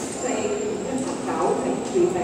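Indistinct voices talking in a large indoor hall.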